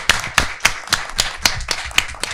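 A small group of people applauding by hand, the separate claps distinct.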